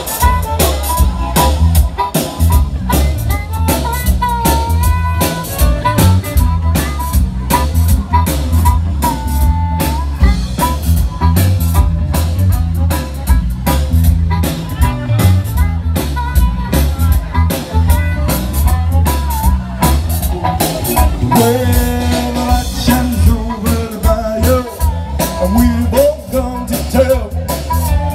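Live blues band playing an instrumental opening, with drum kit, bass and electric guitar under bending lead lines from harmonica, the drums keeping a steady beat throughout.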